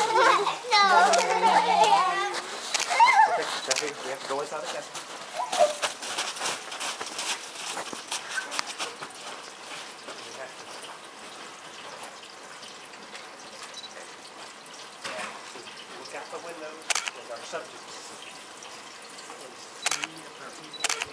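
Voices in the first three seconds, high and shifting in pitch, then a quieter stretch with scattered light crunches and clicks.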